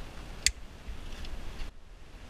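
A single sharp snip about half a second in: cutters clipping the tail off a plastic cable tie.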